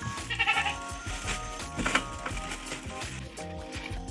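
Background music with a steady melody. Over it a goat bleats briefly about half a second in, and a second short, loud sound comes near two seconds in.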